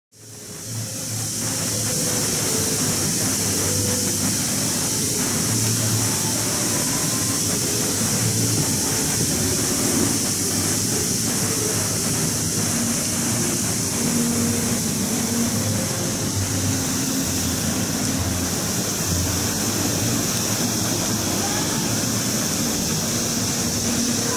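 Steady outdoor ambience that fades in at the start: a constant high hiss over a low rumble, with faint, brief snatches of pitched sound.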